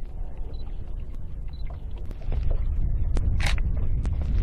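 Steady low rumble, louder from about halfway, with a few sharp clicks of a DSLR camera's shutter firing as photos are taken.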